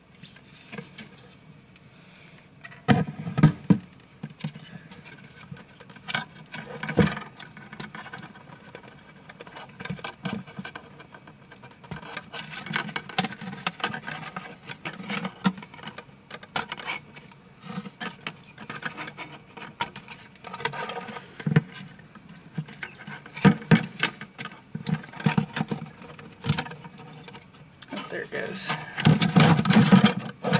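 Handling noise from taking the Tiko 3D printer apart: irregular clicks, taps and knocks as the plastic parts and the ring-shaped control board inside its housing are moved by hand, with louder knocks about three seconds in and near the end.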